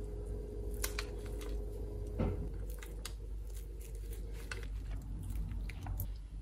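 Kitchen knife cutting through a baked brownie with a crackly top on parchment paper: scattered soft crunches and sharp clicks as the blade presses down and through.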